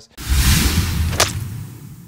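Edited-in transition sound effect: a whoosh with a deep rumble beneath it and a sharp crack about a second in, then fading away.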